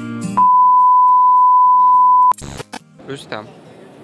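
A steady electronic test-tone beep at one pitch, about two seconds long and the loudest sound here, cut off suddenly and followed by a short burst of noise: an edited-in old-television transition effect.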